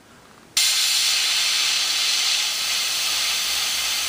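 Badger Sotar 2020 airbrush spraying a fine line of paint: a steady hiss of air that starts abruptly about half a second in.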